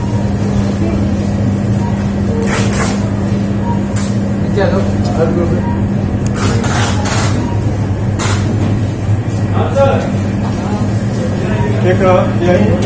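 Shop-floor sound of a supermarket: a steady low hum with indistinct voices now and then, and a few sharp knocks.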